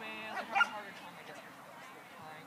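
Dog barking: a short pitched call, then one sharp, loud bark about half a second in.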